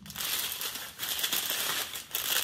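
Small clear plastic bags of diamond painting drills crinkling as they are handled, in two stretches with a short pause about a second in.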